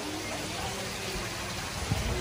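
Steady hiss of water and pumps from large aquarium tanks, with one low thump near the end.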